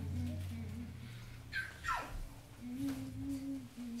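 A voice humming faintly in a few short, low held notes, with a brief falling sound about halfway through.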